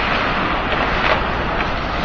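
Steady rushing background noise of an indoor ice hockey rink during play, with no single distinct knock or call standing out.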